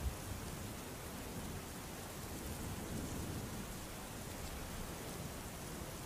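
Soft, steady rain: an even hiss with no distinct drops or rumbles.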